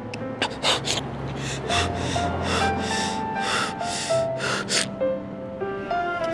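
A man breathing hard in quick, ragged gasps, a few at first and then about three a second, over slow background music of held notes with a low bass.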